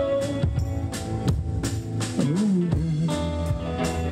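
Live rock band playing an instrumental passage: a drum kit keeping the beat under electric guitars, with one low note sliding down and settling about two seconds in.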